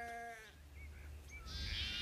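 Sheep bleating: a held bleat fading out at the start and a higher bleat from about one and a half seconds in, over a faint low hum.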